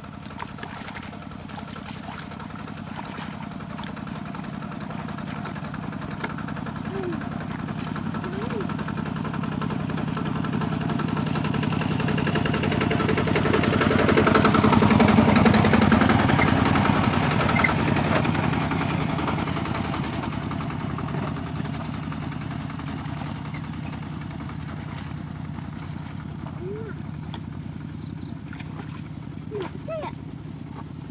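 A motor vehicle engine passing by: it grows steadily louder, is loudest about halfway through, then fades away.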